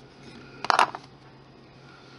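A hand tool set down on a hard work table: one short clatter of a few quick clicks, about three-quarters of a second in.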